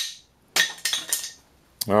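The ringing tail of a wooden mallet blow on a clamped, face-glued mahogany offcut, then a short clatter of four or five light, hard knocks about half a second to a second in, as the test breaks a piece away: the wood beside the Titebond III joint splits rather than the glue line.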